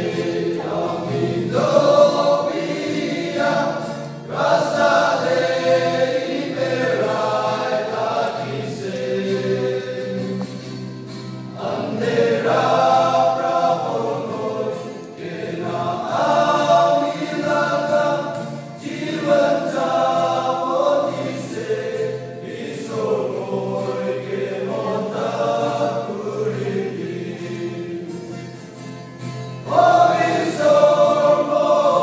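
Men's choir singing a gospel song in Nagamese, in sustained phrases of a few seconds with short breaks between them.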